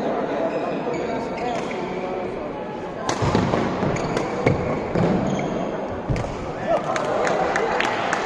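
Badminton rally: rackets striking the shuttlecock in sharp cracks every half second to a second from about three seconds in, the loudest near the start of the exchange, over the steady murmur of spectators in a large hall.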